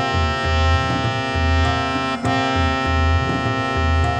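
Instrumental accompaniment for singing practice in the A# scale: a keyboard instrument holds sustained notes that step to a new pitch every second or so, over a steady drone, with low tabla strokes keeping the beat and no voice.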